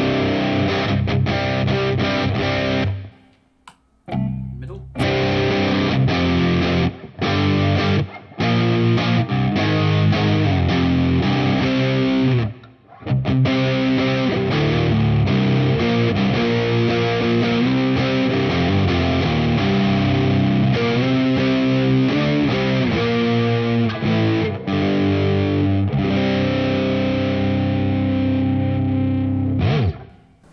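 PRS SE 24 electric guitar on its bridge pickup, played through the Line 6 Helix's riffing patch and recorded direct: distorted riffs and ringing chords. The playing stops dead briefly about three seconds in, again near eight seconds and again near thirteen seconds.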